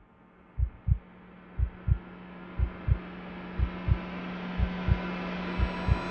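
Heartbeat sound effect, a pair of low thumps about once a second, over a sustained drone that swells steadily louder: a suspense build.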